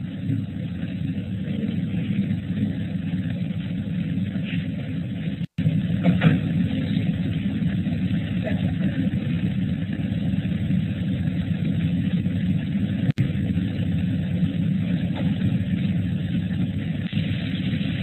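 Steady low rumbling noise on the webinar's audio line, cut off above the narrow bandwidth of the call, broken by two brief dropouts about five and thirteen seconds in.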